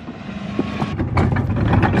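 Wheels of a heavily loaded plastic-tub utility cart rolling over asphalt as it is pushed, a low rumble that grows louder after about a second.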